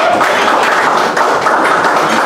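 Audience applauding, a steady dense clatter of many hands clapping.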